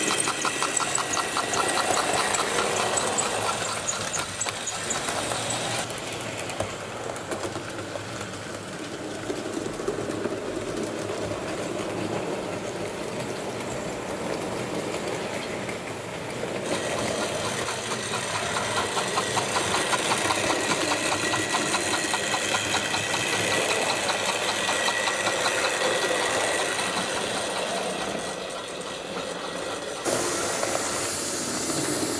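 OO-scale model trains running on the layout track: small electric motors whirring with a rapid fine ticking from wheels and mechanism. The sound rises and falls as the trains pass, with a dip in the first half.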